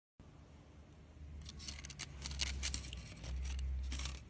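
Crinkling and clicking of a sweet wrapper being handled: a quick run of sharp crackles in the middle, over a low handling rumble.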